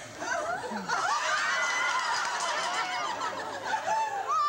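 Laughter: a man and his listeners laughing together, growing louder about a second in.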